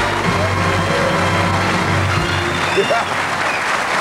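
Studio audience applauding over a short played-on music tune, the music dying away a little past halfway.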